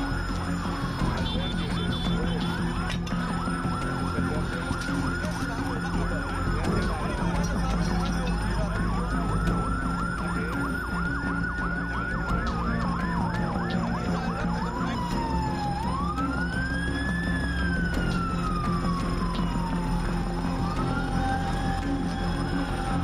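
Emergency vehicle sirens wailing, their pitch rising and falling slowly, with a faster yelping warble from another siren overlapping in the middle. A steady low rumble lies underneath.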